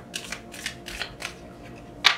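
Oracle cards being handled as one is drawn from the deck: a quick run of crisp papery flicks and snaps of cardstock, about six in just over a second, then quieter.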